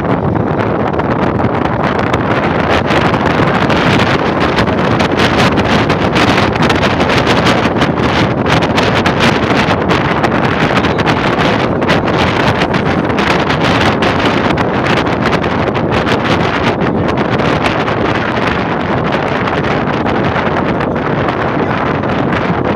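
Loud, steady wind buffeting the phone's microphone through the open window of a moving vehicle, mixed with the vehicle's road noise.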